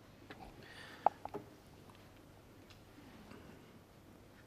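Three quick, sharp light clicks about a second in, the first the loudest, over quiet arena room tone. They come while the player is handling his chalk and cue.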